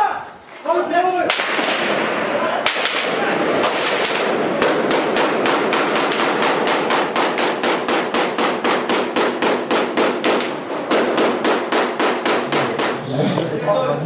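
Sustained automatic gunfire: a long run of evenly spaced shots, about five or six a second, over a continuous loud din, lasting several seconds before voices come back in near the end.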